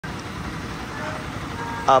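Steady low rumble of a flatbed truck's diesel engine idling; a voice starts just before the end.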